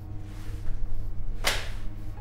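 A single sharp slap about one and a half seconds in: a file folder slapped down onto a table. A low steady drone of film score runs underneath.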